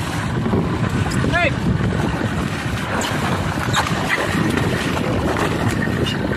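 Wind buffeting the microphone over sea water splashing and sloshing against the side of an inflatable boat, with a man's short shout of "Hei" about a second in.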